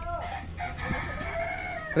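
A rooster crowing once: one long, held call that begins about half a second in and stops just before the end.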